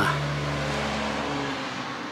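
A motor vehicle running steadily, heard as a low even hum with some hiss. Its deepest rumble drops away near the end.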